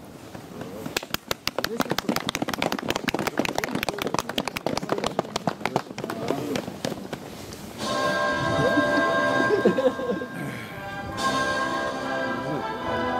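A small crowd claps for several seconds. About eight seconds in, music starts over outdoor loudspeakers and plays steadily for the flag raising.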